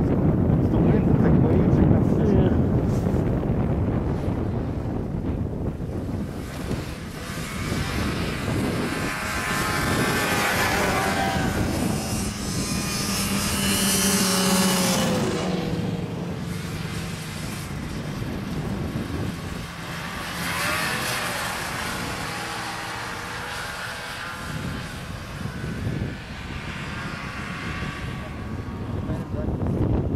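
Two snowmobiles pass in turn, each engine's pitch rising as it approaches and dropping as it goes by. The first pass, about halfway through, is the loudest; the second comes some six seconds later. A low wind rumble on the microphone fills the first few seconds.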